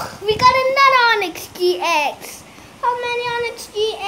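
A boy singing a few drawn-out, held notes in short phrases, without clear words.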